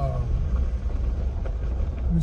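Steady low rumble of a car driving on a paved road, heard from inside the cabin.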